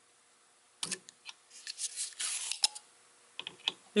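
Handheld desoldering iron sucking molten solder from a circuit board's through holes: a few clicks, a short hiss of suction about two seconds in, then a sharp click and several lighter clicks.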